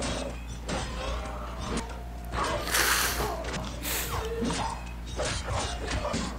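Film soundtrack of a fight scene: music mixed with clattering blows and impacts, with a loud crashing burst about two and a half seconds in and a shorter one about a second later.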